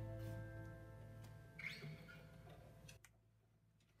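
The band's final chord ringing out and fading away, its sustained string tones dying out about two to three seconds in, with a few faint clicks before near silence.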